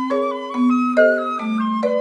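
Concert flute and marimba playing together: the flute carries a melody moving in small steps while the marimba strikes notes about every half second underneath.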